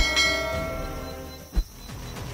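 A bell-like chime strikes once and rings, its tones fading away over about a second and a half, followed by a short low thump.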